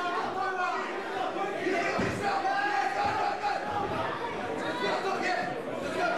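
A small fight crowd shouting and calling out over one another, with several voices overlapping throughout and a single dull thump about two seconds in.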